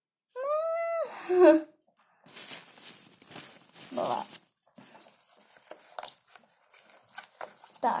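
A short, high call rising and then falling away near the start. It is followed by a plastic stirring stick churning and scraping shaving-foam slime in a plastic tub: soft hissing with small clicks.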